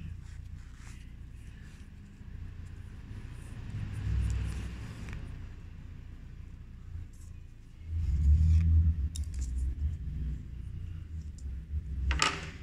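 A low rumble that swells about four seconds in and louder from about eight seconds, under faint rustles of fabric and thread being hand-sewn.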